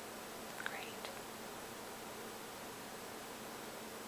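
Steady hiss of background recording noise, with two faint, brief sounds about half a second to a second in.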